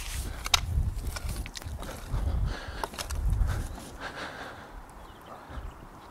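Wellington boots treading down freshly backfilled soil around a newly planted bare-root blackcurrant, firming it in: irregular soft thuds and scuffs with a few sharper clicks.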